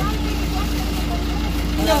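Steady low engine hum, with faint voices over it.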